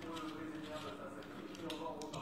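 A man's voice talking in the background over a steady low hum, with a couple of sharp little clicks near the end as a metal e-cigarette tank is handled.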